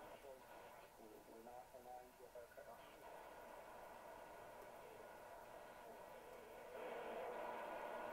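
Drake 2B receiver's speaker output as its frequency dial is tuned: faint fragments of a station's speech over steady band noise and hiss. The noise grows louder near the end as a talk station comes in.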